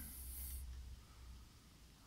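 Quiet pause with a steady low background hum, and a brief high hiss in the first half-second.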